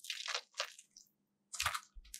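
Gel-bead mesh stress ball squeezed in the hand, with wet squishing and crackling: a burst lasting about half a second at the start, then another short one near the end.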